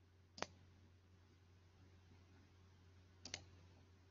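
Near silence with a faint steady hum, broken by two short sharp clicks: one about half a second in and a quick double click a little after three seconds.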